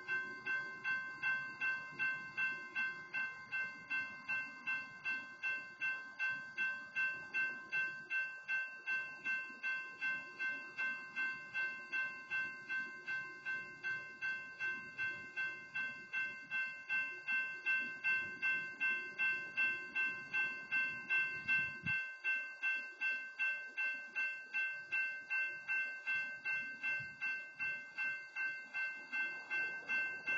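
Railroad grade-crossing warning bell ringing steadily, about two strikes a second. A low rumble runs under it and cuts off suddenly about three quarters of the way through.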